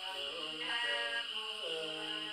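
A woman singing a Nùng folk song without accompaniment, holding long notes that slide from one pitch to the next.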